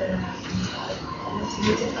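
A woman's voice between words, making drawn-out hesitation sounds in mid-sentence.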